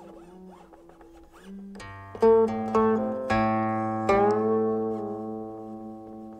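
Guqin (Fuxi-style qin strung with steel strings) playing slowly: quiet sliding notes at first, then a run of plucked notes from about two seconds in that ring on and slowly fade.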